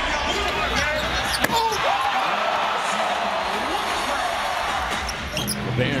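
Basketball game sound in an arena: a steady crowd din with a basketball bouncing on the hardwood and sneakers squeaking on the court. A sharp knock comes about a second and a half in.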